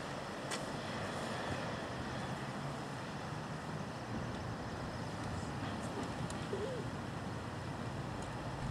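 Steady outdoor background noise with a low rumble, with a couple of faint sharp clicks, one about half a second in and one a little after six seconds.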